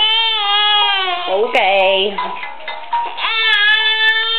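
A 19-week-old baby crying in long, drawn-out wails, three in all, the last starting near the end.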